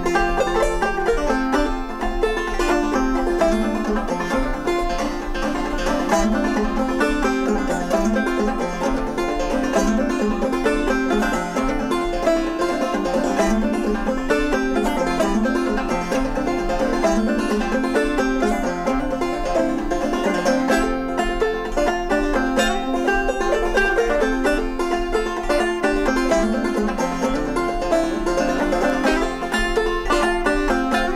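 Two banjos playing an instrumental tune together, a steady stream of quick plucked notes.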